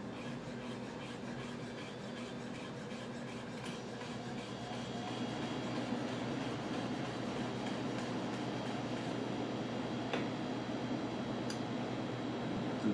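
Imarku 8-inch chef's knife slicing rolled basil into a chiffonade, the blade tapping the cutting board in a quick, steady rhythm of light clicks. A steady low hum runs underneath.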